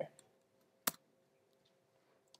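A single sharp click about a second in, the kind made in advancing a presentation slide, set in near silence.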